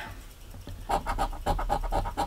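A coin scratching the latex coating off a scratch-off lottery ticket, in rapid back-and-forth strokes that start about a second in.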